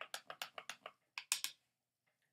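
A spiral-bound sketchbook being shifted on the table: a quick run of short, scratchy paper clicks and rustles, loudest in a pair about one and a half seconds in.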